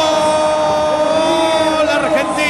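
A football commentator's drawn-out goal call, 'gol' held as one long steady note of the voice, announcing that a goal has been scored.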